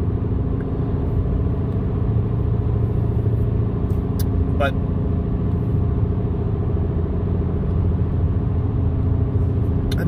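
Steady road and engine noise heard from inside a car cruising at highway speed: a low rumble of tyres with an engine hum.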